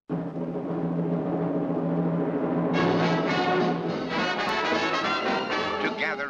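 Orchestral music with brass and timpani: sustained chords that swell into fuller, brighter brass about three seconds in.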